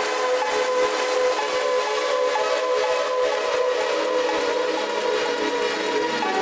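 Electronic dance music from a DJ mix: held synth chords with the bass dropped out, as in a breakdown, the chord tones shifting a few times.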